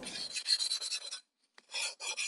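A drawing tool scratching across paper in rapid sketching strokes. The strokes stop briefly a little past the middle, then start again.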